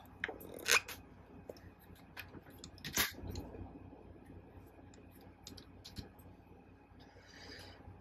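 Plastic parts of a Transformers Studio Series Ultra Magnus figure clicking and knocking faintly as it is handled and laid down, with a sharper click about three seconds in.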